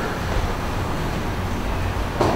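Steady low rumble and hiss of room noise, with no speech.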